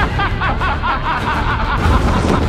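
A rapid, high-pitched giggling laugh over a dark trailer score with a low rumbling drone, and a low hit near the end.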